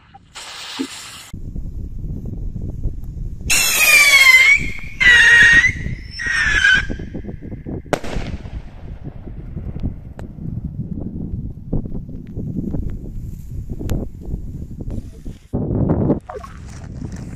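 Stick firework rocket: a brief fizzing hiss near the start, then a shrill whistle falling in pitch in three bursts, and about eight seconds in a single sharp bang as it bursts in the sky. A low rumble runs underneath from just after the start.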